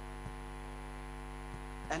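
Steady electrical mains hum from the sound system, with two faint ticks, one about a quarter second in and one about a second and a half in.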